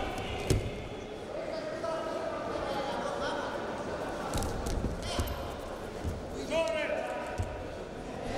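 Wrestlers' feet and bodies thumping on the mat and hands slapping in hand-fighting, a string of sharp thumps with the loudest about half a second in and a cluster near the middle, over voices and shouts echoing in a large hall. A short shout comes near the end.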